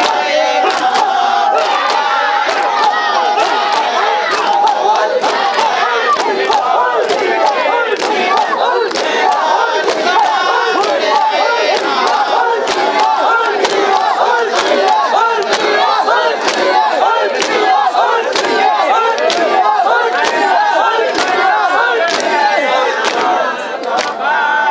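Matam: a crowd of mourners beating their bare chests with their hands in unison, sharp slaps about two a second, over loud massed shouting and chanting.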